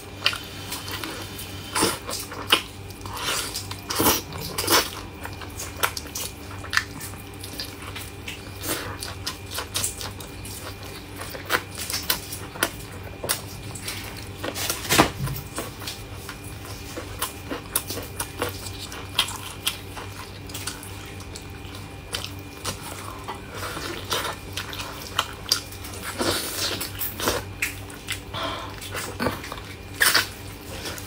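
Close-miked eating: a person biting, tearing and chewing meat off a braised lamb leg bone, with frequent irregular wet smacks and clicks of the mouth over a low steady hum.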